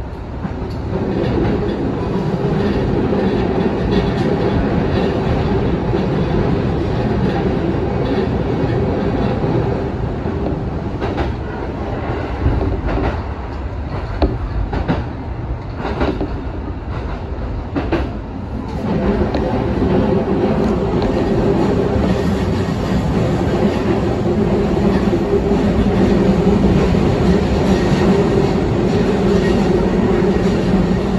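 Ome Line electric commuter train running along the track, heard from inside the front cab: a steady running hum with two held tones and a low rumble. In the middle the hum eases and a run of wheel clicks over the rails comes through, then it builds back up and runs louder to the end.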